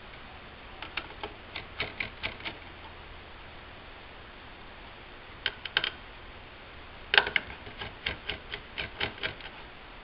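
Runs of small sharp clicks from a small screwdriver working the retaining screws of a laptop's CPU heatsink: a quick run of about eight clicks early on, a brief cluster after five seconds, and a longer run starting just after seven seconds with the loudest click.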